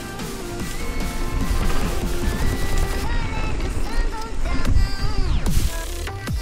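Electronic music with a wobbling, repeatedly falling bass line and held synth tones; near the end the music sweeps steeply down in pitch.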